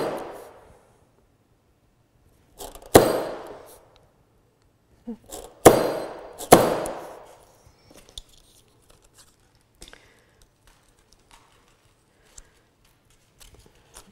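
Three sharp metallic strikes from a hammer punch driving centre holes through layered card, each ringing out briefly. The last two come close together, and faint handling clicks follow.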